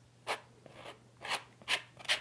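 A palette knife scraping oil paint onto a stretched canvas in three short strokes.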